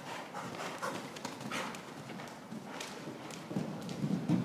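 A horse cantering over an arena's sand surface, its hoofbeats coming as a run of soft strokes in an uneven rhythm.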